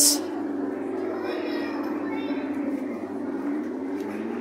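Electric motor of a Jolly Roger Spydero car kiddie ride running with a steady hum, its pitch sagging slightly mid-way and rising again.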